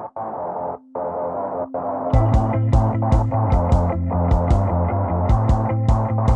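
Outro music with distorted electric guitar. It starts in short stuttering bursts, and a steady drum beat comes in about two seconds in.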